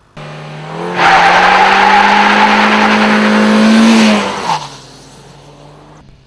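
Ford EcoSport going past at high speed. Its engine note and road and wind rush build loud for about three seconds, then the engine pitch drops suddenly as it goes away, leaving a quieter hum.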